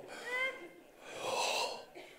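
A man's short voiced sound, then an audible breath near the microphone lasting about half a second, starting a little over a second in.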